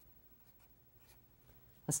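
A marker writing on paper in a few short, faint strokes.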